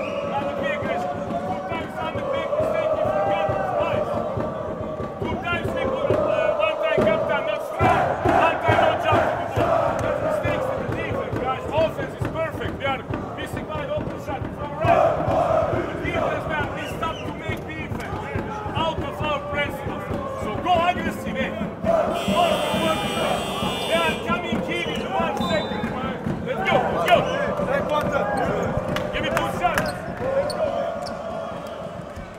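Indoor basketball arena ambience: a crowd chanting over music, with voices and a basketball bouncing on the hardwood court in short repeated thuds.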